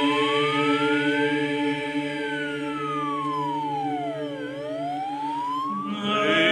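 A vehicle siren wailing in a slow rise and fall: it climbs, sinks and climbs again, over a held choral chord.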